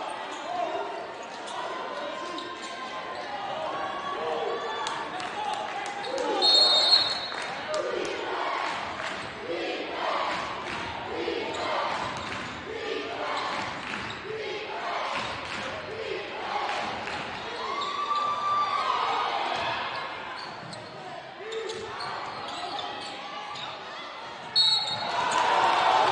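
Live basketball game in a gymnasium: a basketball bouncing on the hardwood court and sneakers and voices of players and spectators echoing in the hall. Short shrill referee's whistle blasts sound about a quarter of the way in and again near the end, where the noise swells.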